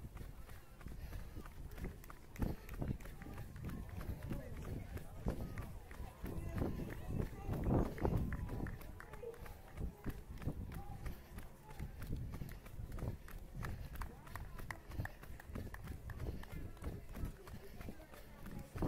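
A runner's footfalls on asphalt, with wind rumbling on the microphone. Voices come from people along the course.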